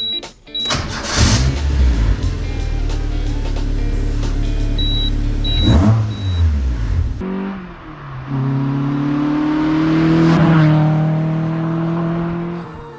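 Toyota AE86 Levin's 4A-GE twin-cam four-cylinder engine starting about a second in, running at a raised idle with a rev near six seconds, then falling away. From about seven seconds, background music with sustained notes.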